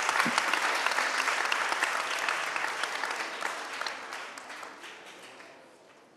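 Audience and panel applauding, a dense patter of many hands clapping that fades away over the last few seconds.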